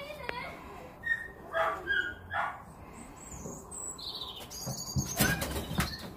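Several short bird calls and whistles, then a rustling burst near the end as the goshawk's wings flap when it leaves its perch.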